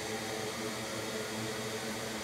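Steady background hiss with a faint hum underneath, unchanging throughout, with no distinct event: room noise such as a fan.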